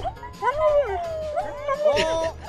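A German Shepherd howling and yipping in bending, up-and-down cries, over background music.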